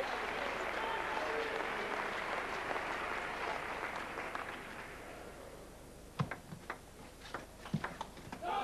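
Arena crowd applauding, dying away over the first few seconds. Then a quick run of sharp table tennis ball clicks off bats and the table during a rally, about six strikes.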